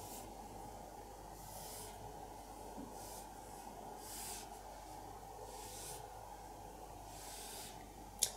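A fibre-tipped pen drawing strokes on paper: six faint, short scratchy hisses, one per stroke, spaced one to one and a half seconds apart, over a steady low hum.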